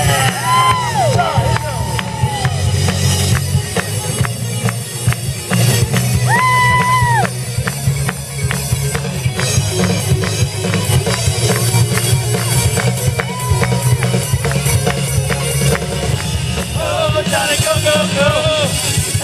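Rock band playing live with electric guitars over a steady beat, with singing near the start and end and one long held note about six and a half seconds in.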